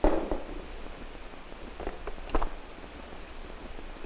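A few brief clicks and knocks of plastic anatomical-model parts being handled and taken apart, over the steady low hum and hiss of an old film soundtrack.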